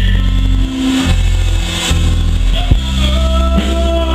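Live rock band playing on an outdoor stage through the PA: drum kit strokes over sustained bass and keyboard notes, with a long held note near the end.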